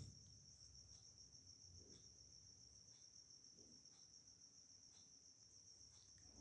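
Near silence: room tone with a faint, steady high-pitched whine or chirring in the background, and faint ticks about once a second.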